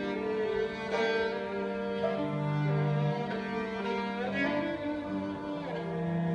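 Live violin playing an Armenian melody, accompanied by a cello holding long low notes underneath.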